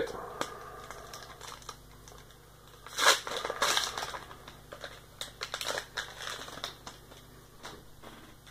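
Foil wrapper of a Pokémon TCG booster pack being torn open and crinkled by hand, in two rustling spells about three and six seconds in.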